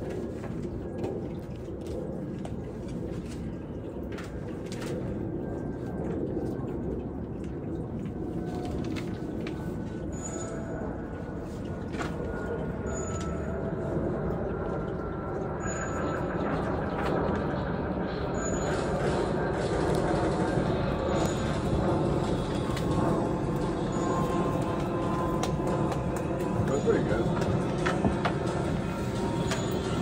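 Indistinct, murmured voices over a steady low rumble, growing a little louder in the second half. From about ten seconds in, a faint short high tone repeats about every two and a half to three seconds.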